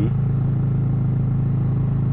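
Yamaha Virago 250's air-cooled V-twin engine running steadily under way, an even drone with no revving.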